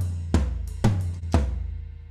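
GetGood Drums Invasion sampled metal drum kit, played from MIDI in Kontakt: four heavy full-kit hits, each with kick and cymbal, about half a second apart. After the last hit the kit rings out and fades as playback stops.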